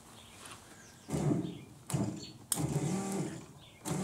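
Electric fuel pump running in several short bursts, each starting with a click as two relay wires are touched together, its whir rising and sagging in pitch with each burst. It is filling the carburetor's float bowls while the float level is set.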